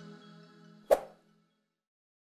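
Background music fading out on a few held low notes, with a single short sharp hit a little under a second in.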